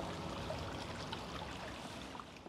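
Running water, a steady wash with small scattered drips, slowly fading out.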